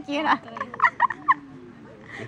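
A woman giggling, a few short high-pitched giggles about a second in, then quieter.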